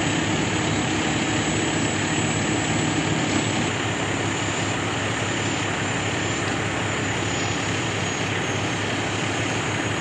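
A fire engine's engine running, a steady loud drone with a low hum underneath.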